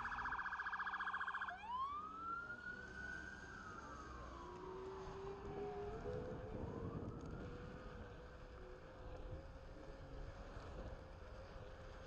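Emergency-vehicle siren: a fast yelp at first, switching about a second and a half in to a slow wail that rises, falls over several seconds, then rises again. A steady lower whine runs underneath from about halfway.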